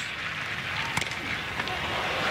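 Stadium crowd noise with one sharp crack of a bat hitting a pitched ball about a second in.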